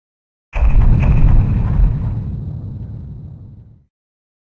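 A deep boom that hits suddenly about half a second in and rumbles away over about three seconds to silence.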